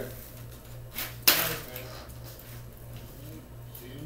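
Handling noise from a clear plastic tub and water-soaked peat pellets: a small click about a second in, then one sharp knock, over a steady low hum.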